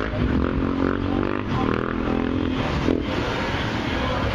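Street traffic, with a passing vehicle's engine revving, its pitch sagging and rising again over the rumble of other traffic. A single sharp click sounds about three seconds in.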